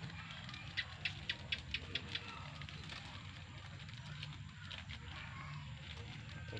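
Black plastic seedling bag crinkling as soil is packed into it by hand around a coffee seedling: a run of short, irregular crackles in the first two seconds, then softer rustling over a low steady hum.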